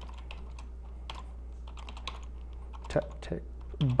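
Computer keyboard typing: irregular, quick keystrokes as a terminal command is entered, over a steady low electrical hum.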